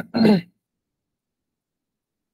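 A woman clears her throat once, briefly, at the very start: a sharp catch followed by a short voiced sound that falls in pitch.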